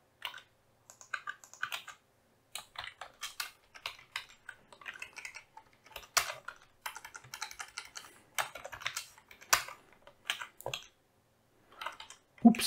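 Typing on a computer keyboard: runs of keystrokes in short bursts with brief pauses between them.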